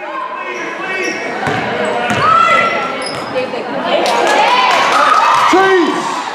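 Live court sound of a basketball game in a school gymnasium: a basketball dribbled on the hardwood floor, with players and spectators calling out over it.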